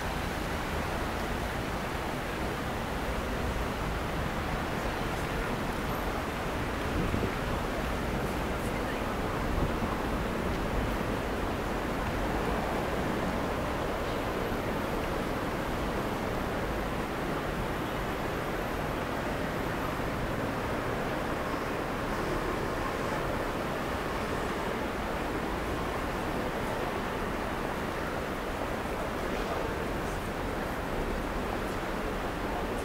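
Steady city street ambience: a continuous wash of traffic noise with faint voices of passers-by.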